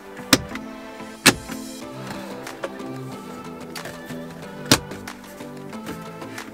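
Background music with three sharp clicks, about a third of a second in, just over a second in and near five seconds: the plastic stereo trim bezel's clips snapping into a 3rd-gen Toyota Tacoma dash as it is pressed home.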